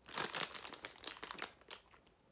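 Crinkling rustle for about a second and a half, loudest at first and fading out.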